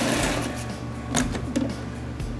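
Electric food processor motor running as it blends pesto, easing off over the first second, then a sharp plastic click just over a second in as the lid is handled.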